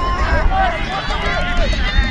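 Many voices shouting and calling out at once from lacrosse players along the sideline, overlapping yells during play.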